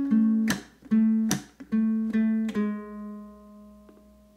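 Low-G ukulele fingerpicked: a short bluesy phrase with two percussive slaps on the strings, walking down chromatically to a last note on the first fret of the fourth string, which rings out and fades.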